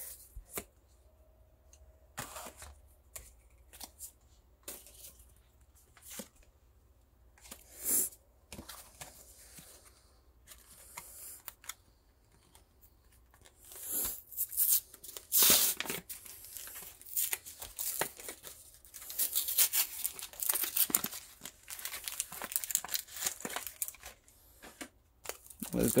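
Trading cards handled, with light scattered clicks, then from about halfway a long run of tearing and crinkling as a foil Pokémon booster pack wrapper is ripped open.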